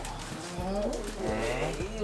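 Low men's voices talking, the words indistinct.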